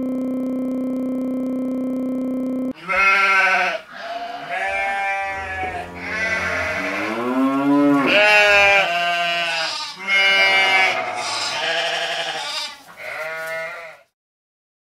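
A held musical chord cuts off about three seconds in. Then sheep bleat over and over: about eight calls of roughly a second each, wavering in pitch, some running into one another.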